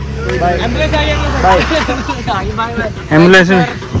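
Voices talking over a low steady vehicle hum that cuts out a little over two seconds in, followed by a loud voice near the end.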